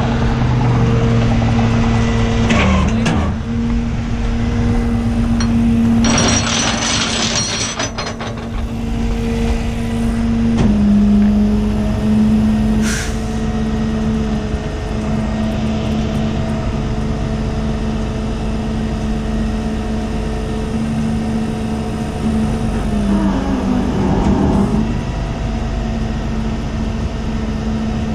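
A Freightliner M2 rollback tow truck's engine running with the bed hydraulics working as the Jerr-Dan bed is tilted and slid back. It gives a steady drone whose pitch drops a little about 11 seconds in and shifts again near 23 seconds, with a short burst of hiss around 6 to 8 seconds in.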